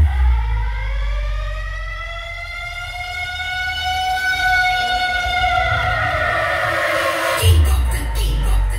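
A siren sound effect blasting from a large DJ sound system. It is one wailing tone that rises slowly for about four seconds and then falls, over a steady deep bass. Near the end, heavy bass hits bring the beat back in.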